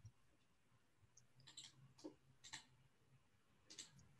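Near silence with a few faint, short clicks: a couple about a second and a half to two and a half seconds in, and another near the end.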